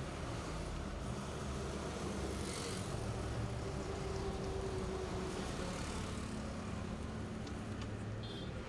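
Road traffic passing close by: a bus and then a truck going past, with engine hum under a steady wash of tyre and road noise and a brief swell of hiss about two and a half seconds in.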